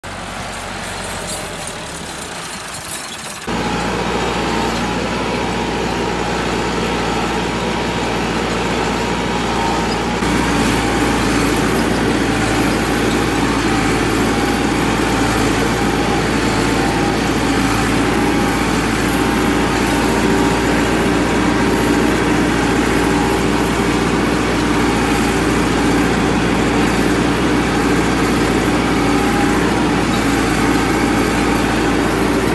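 Massey Ferguson 385 tractor's diesel engine running steadily as the tractor drives along. About three and a half seconds in it becomes much louder and closer, as heard from the driver's seat, and stays steady from there.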